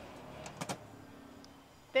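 Two quick knocks a little over half a second in, over a faint steady hum.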